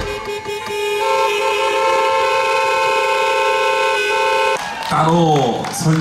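A live band's closing chord, several notes held steady for about four and a half seconds, then cut off suddenly. A man then starts speaking into a microphone.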